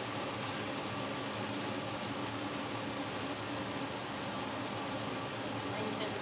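Steady hiss and hum of an outdoor grill's gas burners running on high with an exhaust vent fan, while water drops sizzle on the heating griddle top as a test of whether it is hot enough.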